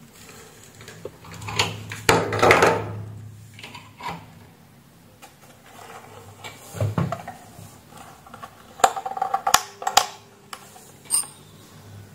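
Clicks, knocks and rattles from a wall fan and its plug being handled on a workbench. A low hum runs for about two seconds near the start, and a cluster of sharp clicks comes near the end.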